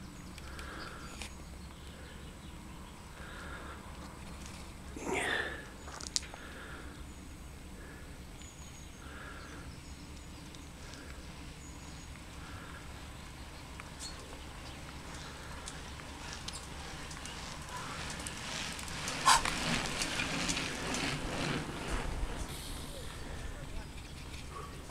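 Outdoor ambience with a steady low background, a bird repeating a short call about once a second, and a louder stretch of mixed noise with a sharp click late on.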